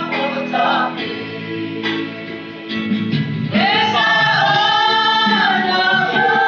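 A small mixed choir of women and men singing together, voices holding long notes. The singing softens about two seconds in, then comes back louder with a long sustained phrase from a little past halfway.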